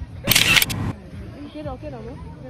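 A short, loud burst of hissy noise lasting about half a second, followed by faint voices.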